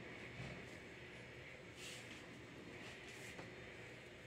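Near silence: faint room hiss, with a couple of soft, faint rustles about halfway through and near the end.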